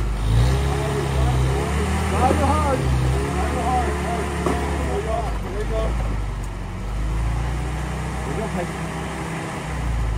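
A vintage 4x4's engine running steadily at low speed, with indistinct voices talking over it in the first half.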